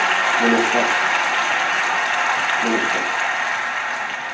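Audience applauding steadily, easing a little toward the end, with a few brief words of a voice over it.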